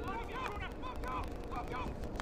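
Excited shouting from players and sideline voices on a hockey pitch as an attack nears the goal: a quick string of short, high-pitched yells over a steady low rumble.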